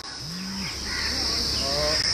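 Steady, high-pitched insect chirring continues through a pause in speech, with a brief low vocal hum near the start.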